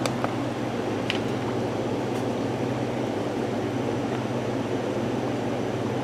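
Steady mechanical hum with a hiss over it, like a running fan or air conditioner, at an even level throughout. A light click comes right at the start as the digital scale's button is pressed, and another about a second in.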